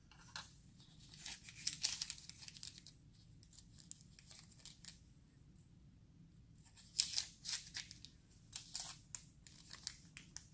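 Paper packaging rustling and tearing in two spells of short crinkly scrapes, the first about a second in and the second from about seven seconds: the paper wrapper of a sterile cotton-tipped applicator being handled and torn open.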